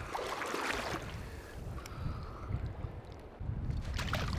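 Shallow creek water rushing and splashing close to the microphone, with a burst of splashing in the first second, over a steady low rumble of wind on the microphone.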